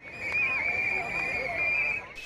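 A plastic whistle blown in one long, high note that wavers slightly, over a crowd's voices.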